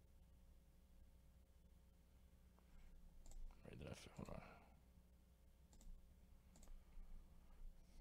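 Faint, scattered clicks of a computer mouse and keyboard over near silence, with a steady low electrical hum underneath.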